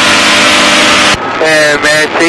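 Challenger light aircraft's engine running steadily in flight, heard through the cockpit headset under a loud, even radio hiss that cuts off suddenly about a second in.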